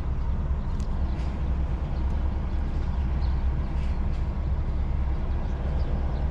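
A lorry's diesel engine running steadily at low revs, heard from inside the cab as the truck manoeuvres slowly.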